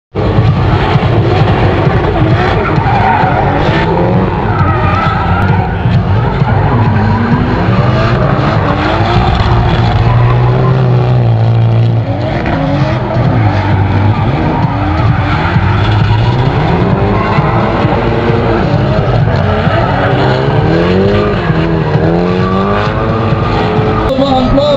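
Drift cars sliding through corners, their engines revving up and down hard with tyre squeal from the sliding tyres. The engine note is held steady for a moment about halfway through, with a short dip in level just after.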